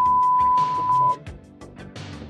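A steady broadcast test tone playing from a laptop, one unbroken pitch that cuts off suddenly about a second in when it is muted.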